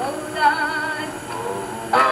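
Background music: a gospel vocal group singing, with a voice holding a note with wide vibrato about half a second in.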